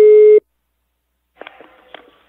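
Telephone ringback tone heard over a phone line: a steady single-pitch beep that stops about half a second in, then a second of silence. Near the end come two faint clicks and faint line noise as the call is picked up.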